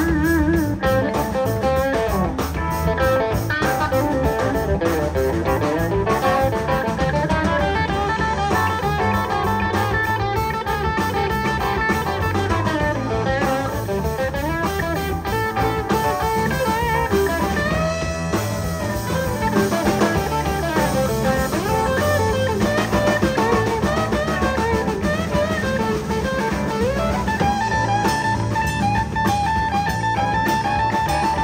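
Live electric blues band playing an instrumental passage: a Stratocaster-style electric guitar leads with bending notes over bass guitar and drum kit.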